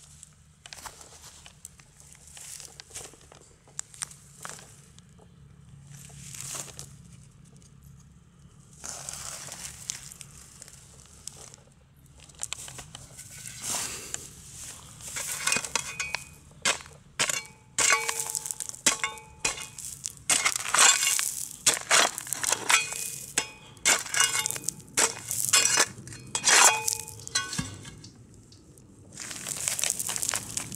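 A hand spade digging and scraping through grassy soil, crunching earth and roots, stroke after stroke. In the second half the strokes come faster and louder, and many give a short metallic ring as the blade scrapes against a buried rusted metal pot.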